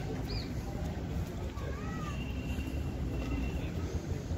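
Low rumble of wind on the microphone, with a few faint high whistled bird calls, one rising and falling call about halfway through.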